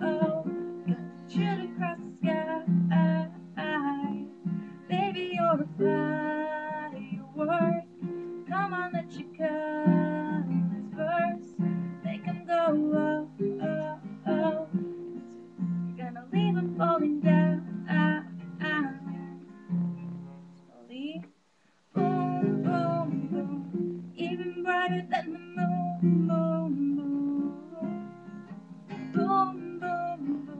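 Acoustic guitar strummed while a woman sings along, breaking off briefly about two-thirds through before the strumming and singing resume.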